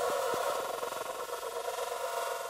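A steady electronic buzzing tone, with a couple of faint ticks in the first half second.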